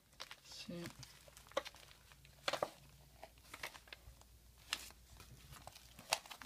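Clear plastic packaging around a sheet of silver bars being handled: faint, scattered crinkles and clicks of the plastic, about one every second.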